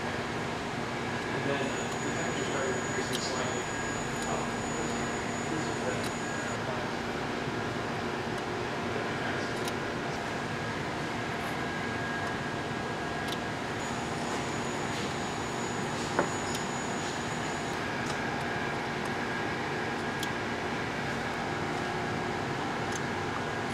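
Steady mechanical hum and hiss of running laboratory equipment, with one sharp click about sixteen seconds in.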